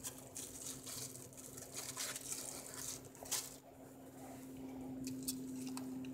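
Faint crinkling and rustling of a thin plastic bag as a lime wedge is worked out of it by hand, with scattered small clicks, one louder about three seconds in. A low steady hum runs underneath.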